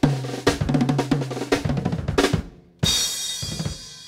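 A drum kit played solo: a fast fill of snare and tom strokes with bass drum, ending with a single cymbal crash a little under three seconds in that rings out.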